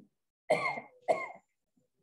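A person coughing twice, the coughs about half a second apart.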